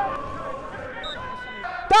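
Low pitch-side ambience of a football match with faint distant voices, then a man's loud shout of a player's name starts just before the end.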